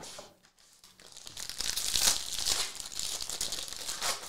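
Plastic trading-card pack wrapper crinkling as it is torn open and handled, starting about a second in and loudest around the middle.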